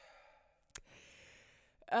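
A person sighing: a short breathy exhale, a soft mouth click about three-quarters of a second in, then a longer exhale.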